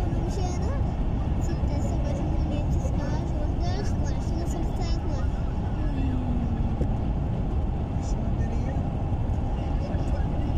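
Steady low rumble of road and engine noise inside a vehicle travelling at highway speed, with faint, indistinct voices over it.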